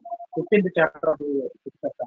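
A man's voice speaking over a video-call connection.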